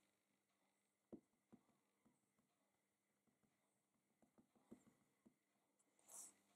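Near silence with a few faint, soft taps, two about a second in and a small cluster near the end: a clear acrylic stamp block being dabbed against an ink pad to ink a rubber stamp.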